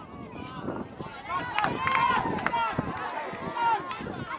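Several people shouting and calling out at once across a football pitch, louder about halfway through and again near the end, with a few sharp knocks in the middle.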